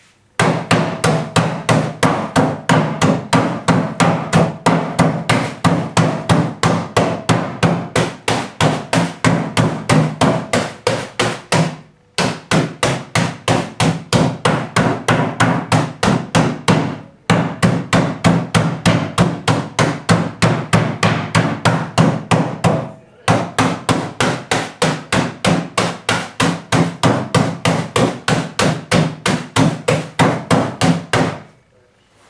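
Rapid, rhythmic blows of a metal meat-tenderizing mallet on biscuits wrapped in a tea towel on a table, crushing them, about three or four strikes a second, with brief pauses about 12, 17 and 23 seconds in.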